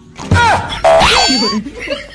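Edited-in cartoon comedy sound effect: a tone whose pitch wobbles up and down, with a louder buzzy blast about a second in.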